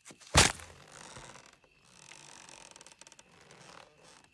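A rope noose snapping taut with one sharp crack about half a second in, as a body drops on it, followed by faint creaking of the rope under the hanging weight.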